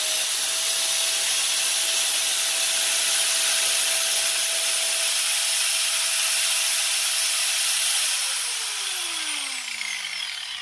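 A mains-powered electric motor, the meter's plugged-in test load, switched on and running at steady speed with a loud whirring hiss and one steady hum. About eight seconds in it loses power and winds down, its pitch falling as it slows.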